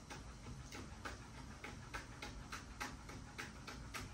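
Knife chopping on a cutting board: a quiet, steady run of short knocks, about three or four a second.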